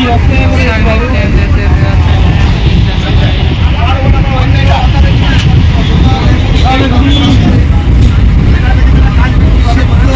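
A passenger train running along the track, heard from inside the carriage at an open window as a loud, steady low rumble. Voices are faint behind it.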